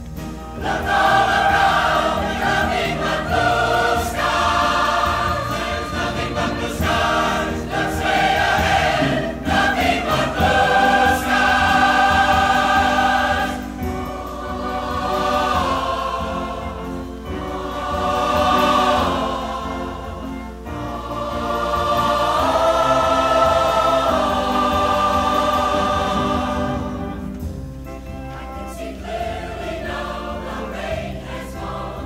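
A mixed choir singing in live performance, in long phrases of held chords that swell and fade, growing softer near the end.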